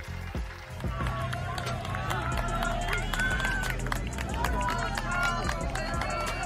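Spectators at a cross-country race shouting and cheering over one another as a pack of runners goes by, with the footsteps of many runners on grass. It starts about a second in, after a short lull.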